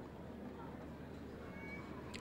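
A pause with only a faint, steady low hum and background noise, and one brief, faint high tone about three-quarters of the way through.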